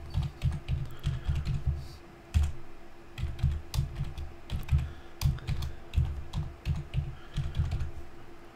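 Computer keyboard typing: an irregular run of keystrokes with a brief pause about two seconds in. A faint steady hum sits underneath.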